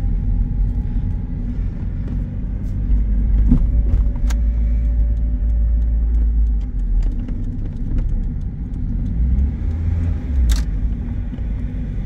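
Mazda Miata's four-cylinder engine pulling gently at low revs in second gear, heard from inside the cabin as the car rolls slowly: a steady low rumble. A few sharp clicks come through, about a third of the way in and again near the end.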